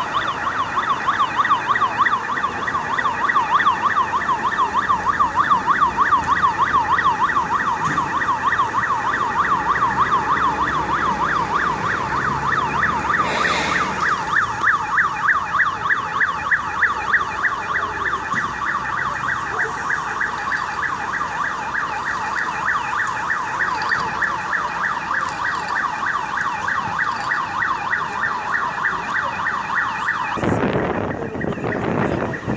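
Emergency vehicle siren sounding continuously in a fast, even up-and-down warble.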